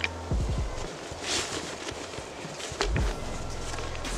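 Clothing being stuffed into a backpack: fabric rustling, with a few dull thumps and a click as the pack is handled and its contents pushed down.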